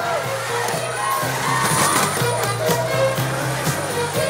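Background pop music with a steady beat playing over an arena sound system, a pulsing bass line under regular drum hits.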